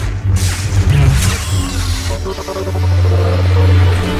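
Lightsaber hum and swishing swings over trailer music, the low electric hum holding steady and strongest near the end.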